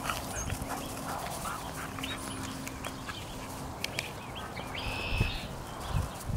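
Yellow Labrador retriever puppy making short high whines and yips, with a louder call about five seconds in.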